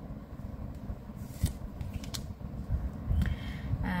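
Tarot cards being handled as the next card is drawn: a few short, soft card rustles and slides, mostly between one and two and a half seconds in.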